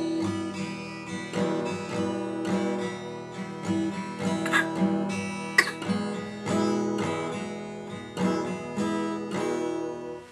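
Acoustic guitar being strummed, chords struck about once a second and left to ring.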